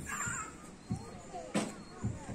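Faint outdoor sounds: one short, harsh call right at the start, and a single thump about a second and a half in.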